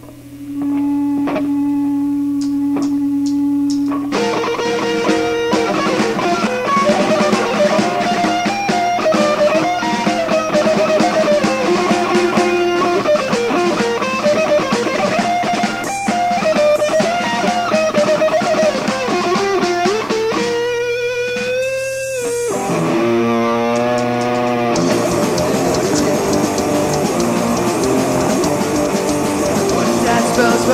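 Live rock band playing an instrumental passage. An electric guitar opens with a held note and repeated picked strokes, and the band comes in about four seconds in under a wavering guitar melody. Sliding notes come about two-thirds through, and the band plays fuller near the end.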